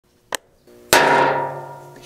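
A sharp click, then a single loud ringing strike of several tones that dies away slowly over about a second, like a chime or chord hit used as an intro sound effect.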